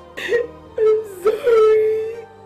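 A woman crying: a few short sobbing gasps, then one long drawn-out wail.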